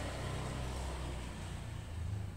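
A steady low rumble of background noise, like an engine heard from a distance.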